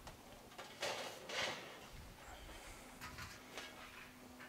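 Faint scrapes and rustles of a thin sheet of tin being picked up and handled, with two short ones about a second in and a few lighter ones near the end.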